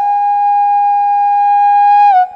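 Flute holding one long, steady note in a piece of music, sliding up slightly into it at the start, over a faint steady drone.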